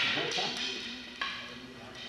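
Scuffling and rustling of clothing and bodies on a gym floor as a partner is taken down and pinned, a burst that fades over about a second, with a sharp knock a little past one second in. Faint voices murmur underneath.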